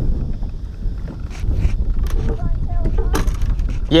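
Wind buffeting an action camera's microphone in a steady low rumble, with a few sharp clicks and knocks scattered through it.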